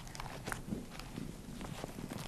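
A hardbound Gospel book being lifted from a wooden lectern close to its microphone: a scatter of faint, irregular taps and knocks over a low hum.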